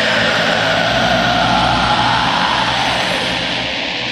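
A loud rushing noise cuts in within a black/pagan metal track, with whining pitches that slide downward and fade out after about three seconds, like a passing aircraft; the music carries on underneath.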